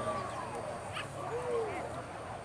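Boar-hunting dogs giving a few separate yelps and barks, one of them arching up and down about halfway through, as they run across the field.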